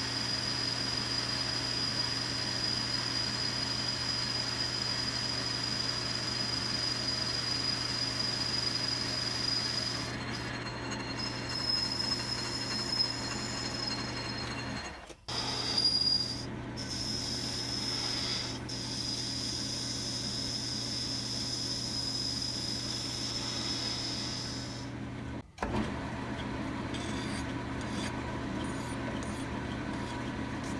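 Logan 10-inch metal lathe running, a steady motor hum with a high whine, while a cutting tool takes a light truing pass over a spinning aluminium part. The sound cuts out briefly twice. Near the end a hand file rubs across the spinning work.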